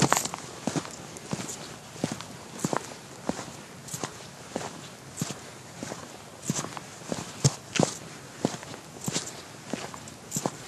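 Footsteps of a person walking at a steady pace in shoes on hard pavement, about one and a half steps a second. A sharp click at the very start is the loudest sound.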